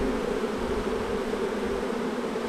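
A honey bee swarm buzzing in a steady, unbroken hum as the bees crawl over a bare hand and into an open hive box.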